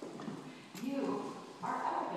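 Children's voices talking and calling out among the crowd, with a louder high-pitched voice around one second in and again near the end.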